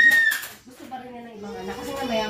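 Voices in a room: a brief high-pitched squeal at the very start, then a long, drawn-out vocal sound without clear words.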